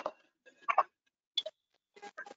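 Three short clicks, evenly spaced about three-quarters of a second apart.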